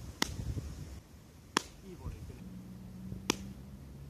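A baseball smacking into a leather glove, three sharp pops about a second and a half apart.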